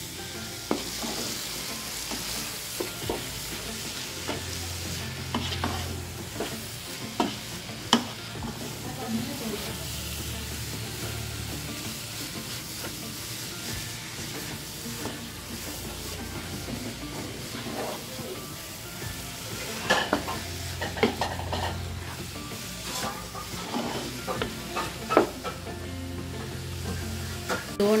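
Wooden spatula stirring and scraping grated carrot halwa mixed with crushed coconut as it sizzles in a pan, with occasional sharp knocks of the spatula against the pan. The mixture is being roasted with the coconut.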